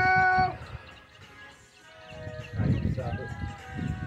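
A person's voice holding a high, drawn-out note for about half a second, then a quieter lull, then brief speech near the end.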